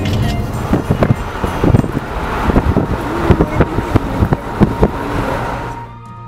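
Road and engine noise inside a moving car, with a run of irregular thumps and knocks from about a second in, under background music. The car noise stops just before the end, leaving the music.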